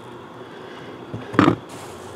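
Handling sounds around an opened rock tumbler barrel full of soapy slurry: a steady low background with one short thud about a second and a half in.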